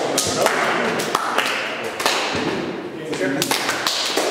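Sharp hand claps and slaps from a group of people doing hand gestures, scattered irregularly, over many voices talking in a large room.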